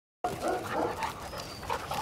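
Dogs play-wrestling, giving short, scattered vocal sounds as they tussle.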